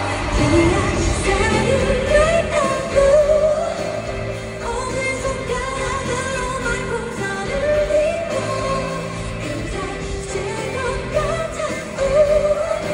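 A live pop song: a female singer's voice carrying the melody in phrases over a band, heard through the arena's PA from the audience seats.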